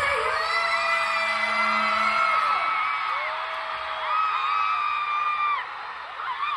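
A concert crowd screams and cheers, with many overlapping high-pitched screams held for a second or two each.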